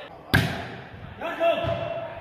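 A ball is struck hard with one sharp smack about a third of a second in, followed by a man's drawn-out shout over the last second.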